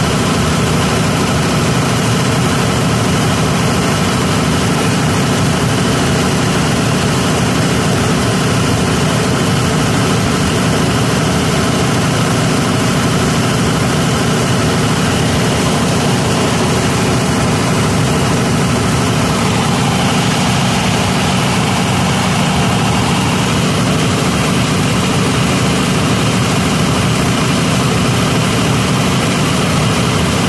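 Six-cylinder Kirloskar diesel generator set running steadily with no electrical load.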